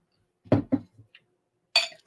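A glass bottle knocks against glass with a short, bright clink near the end, after a couple of brief vocal sounds.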